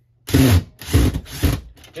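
Cordless drill run in three short bursts, the bit pre-drilling a pilot hole into a wood-panelled wall to get it started.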